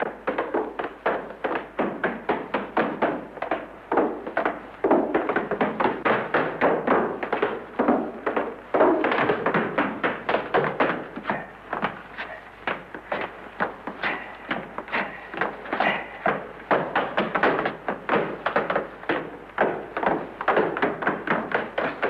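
Two dancers' tap shoes tapping out steps on a wooden staircase: a quick, rhythmic run of metal-tipped taps, several a second, with no accompaniment.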